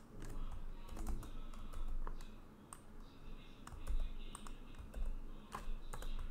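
Typing on a computer keyboard: irregular, scattered keystrokes.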